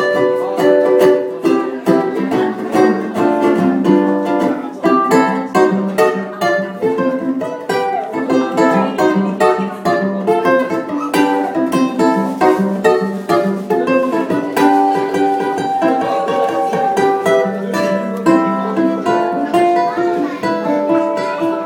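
Solo ukulele playing a French melody, plucked notes over chords at a lively, even pace, heard live in a small room.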